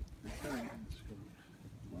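A short snatch of a person's voice about half a second in, with a faint low rumble beneath it.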